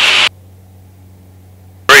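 A voice over a light aircraft's cockpit intercom cuts off sharply just after the start, leaving a faint, low, steady hum. A voice cuts back in just as abruptly near the end.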